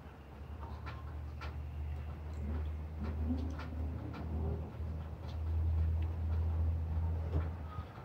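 Quiet background: a steady low rumble that grows louder after the middle, with faint scattered clicks and a few short, soft, low calls in the middle.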